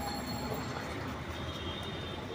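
Steady street background noise with faint high squeal-like tones and no distinct individual events.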